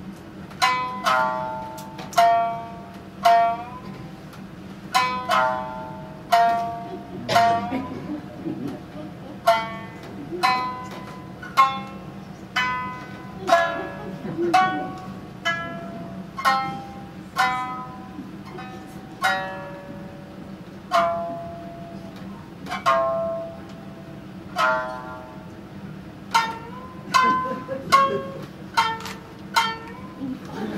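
A slow plucked-string melody of single notes, each struck sharply and left to ring, about one or two a second with short pauses between phrases, as interlude music for a boat-party scene in a rakugo story.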